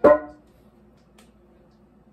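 A stainless steel mixing bowl is knocked once as dough is worked in it by hand, and rings briefly with a metallic tone that dies away within half a second. A faint click follows about a second later.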